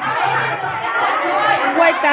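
Crowd chatter: many people talking at once, no single voice standing out.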